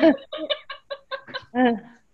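A person laughing in a quick run of short pulses, about six a second, ending on a longer one.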